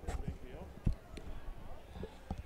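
Basketballs bouncing on a hardwood gym floor, a few separate thuds with the loudest a little under a second in, over voices in the gym.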